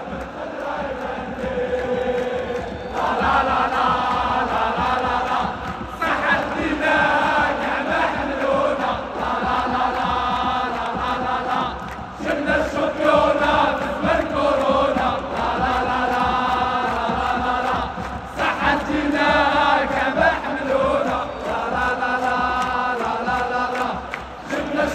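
Football ultras in a stadium stand chanting a song in unison, a huge mass of voices singing together in repeated phrases a few seconds long.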